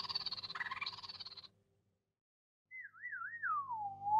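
The tail of an intro music sting fades out, then after a short silence a whistle-like cartoon sound effect warbles twice and slides down in pitch, turning upward again at the very end.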